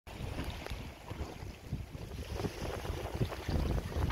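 Wind buffeting the microphone on a sailing yacht under way, with the rush of the sea and a few light knocks.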